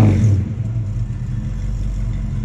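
1969 Dodge Coronet Super Bee's V8 engine running through its exhaust. It comes down off a rev in the first half second and settles to a steady, lower idle.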